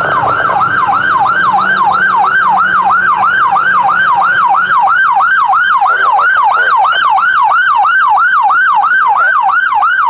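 Police car siren on a fast yelp, its pitch sweeping up and down about four times a second without a break.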